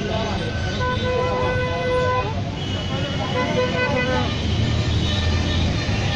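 Street traffic rumble with a vehicle horn sounding one held honk, starting about a second in and lasting about a second and a half, amid voices.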